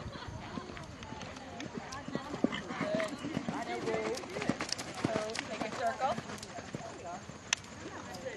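Horse cantering on sand arena footing, its hoofbeats faint under indistinct voices of people talking nearby.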